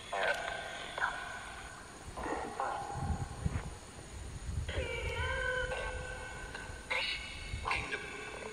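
Spirit box sweeping and putting out choppy fragments of distorted, tone-like sound that start, stop and jump in pitch every second or so, which the investigators listen to for spirit words.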